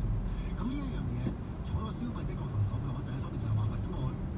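Car cabin sound while driving slowly in city traffic: a steady low engine and road rumble, with faint talk and music underneath.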